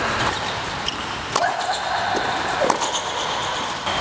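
Tennis balls struck with rackets on an indoor court: a couple of sharp hits about a second and a half apart, over a steady hum.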